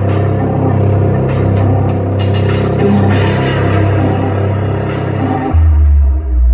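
Live dark electronic music played through a venue PA, with a steady synth bass line and electronic percussion. About five and a half seconds in, everything but a deep bass note drops out.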